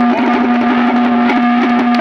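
Live Haryanvi ragini folk music played through loudspeakers: a long held note over a steady drone, with light drum strokes.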